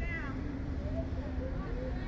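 A brief high-pitched squeal right at the start, then faint voices over a steady low hum and rumble.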